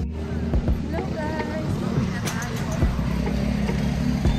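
Open-air market ambience: people talking in the background, a steady low engine hum from a vehicle that comes in from about halfway, and scattered small clicks and knocks.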